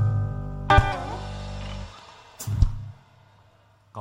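Live rock band with electric and bass guitars closing a song: the final chord rings, a last chord is struck with a bend in pitch and held, the low notes stop about two seconds in, and one last short hit sounds and dies away.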